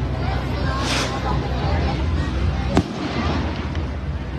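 A firework rocket hisses briefly about a second in, then bursts with one sharp bang near three seconds, over steady crowd chatter.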